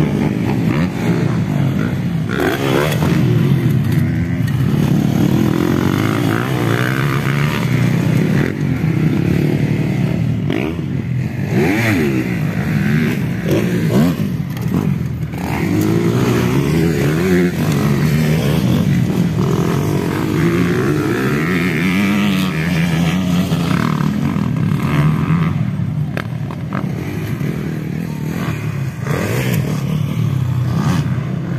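Motocross dirt bike engines revving up and down as they race around the track, the pitch rising and falling without a break.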